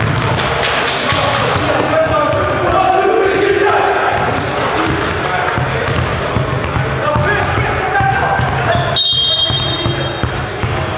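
Several people talking at once in an echoing gymnasium, with a basketball bouncing on the hardwood court. A short, steady high tone comes near the end.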